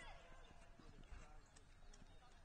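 Near silence of a soccer field heard from afar: faint distant voices of players calling, a few faint knocks, and a low background rumble.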